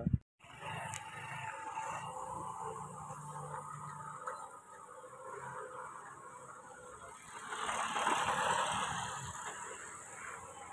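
A road vehicle passing by, its noise swelling up about three quarters of the way through and fading away again, over steady outdoor background noise.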